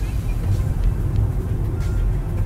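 Steady low rumble of engine and road noise inside a car's cabin while driving at speed.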